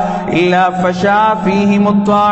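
A man's voice preaching in a sing-song, chant-like delivery, held notes gliding up and down.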